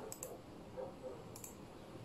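A few faint, sharp clicks in a quiet room: two close together just after the start and another about one and a half seconds in.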